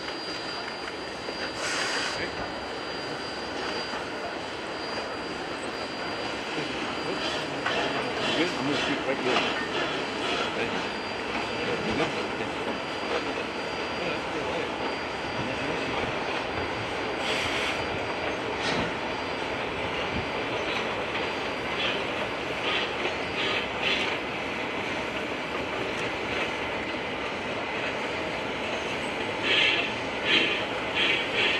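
Narrow-gauge steam train rolling slowly past on a curve, its engine drifting rather than working. The cars' wheels clatter over the rail joints, and the flanges squeal briefly now and then.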